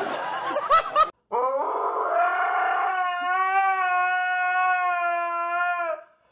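A dog howling: one long howl that rises in pitch at first, then holds a steady note for about three seconds before stopping. Just before it, two short loud yelps from a man over restaurant chatter.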